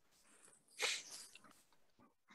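A short, breathy burst of noise from a person about a second in, trailing off over half a second.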